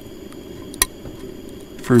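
A P-38 military can opener levering its way around the rim of a tin can, cutting the lid slowly with faint ticks and one sharp click just under a second in.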